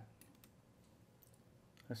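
Near silence with a few faint, short computer mouse clicks as a video is scrubbed; a man's voice starts right at the end.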